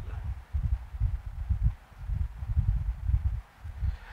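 Low, uneven background rumble with soft thumps and no speech.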